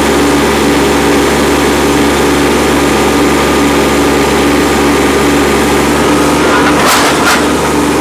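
Kubota B2301 compact tractor's three-cylinder diesel engine running steadily under hydraulic load as the front loader raises a heavy pallet of weights and lowers it again. There are a couple of short, sharp noises near the end.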